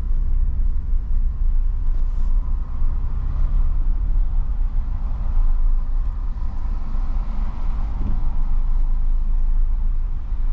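Car cabin noise while driving slowly: a steady low rumble of engine and tyres, heard from inside the car.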